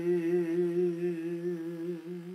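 A man's unaccompanied voice holding one long sung note with a slight, even waver, at the end of a line of sung Punjabi Sufi verse.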